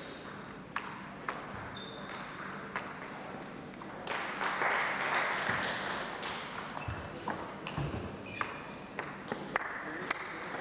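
Table tennis rally: the celluloid ball ticks sharply off the bats and table in a string of separate hits, some with a short ringing ping, echoing in a large sports hall. A brief swell of crowd noise rises about halfway through.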